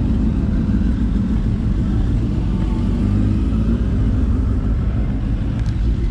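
Sport motorcycle engine running steadily at low revs close by, a continuous low-pitched sound with no revving up or down.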